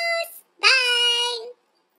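A woman's high, sing-song voice holding long notes: one note fades out just after the start, then a second long note runs from about half a second in to about a second and a half in.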